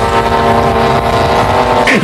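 A steady engine drone held at one constant pitch with a rough low rumble beneath, cutting off just before the end.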